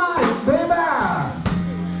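A live blues band playing: a saxophone phrase bending up and down over electric guitars, bass and drums, with regular cymbal strokes. Near the end the band settles onto a held low note.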